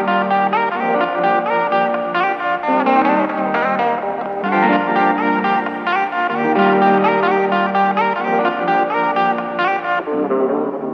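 Background music with guitar and sustained melodic notes.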